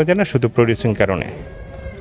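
A man speaking, trailing off about a second in, followed by a quieter pause with a faint thin high tone.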